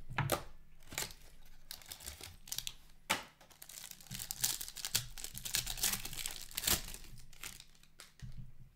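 Plastic wrapper of a 2020-21 SP Game Used hockey card pack being slit and torn open, with irregular crinkling and tearing that is loudest in the second half as the wrapper is pulled off the cards.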